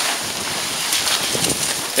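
Large plastic tarp rustling and crackling as it is lifted and billows in the wind: a steady rushing noise.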